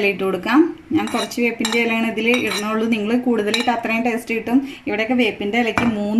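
Steel spoon scraping and clinking against a stainless steel bowl and a plate, with several sharp clinks.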